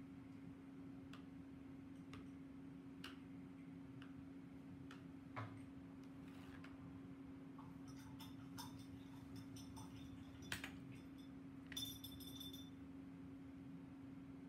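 Near quiet: a steady low hum under scattered faint ticks and taps as a stylus is worked through paint floating in a plastic marbling tray. About twelve seconds in there is a brief ringing clink as a thin metal stylus is laid down on the plastic palette.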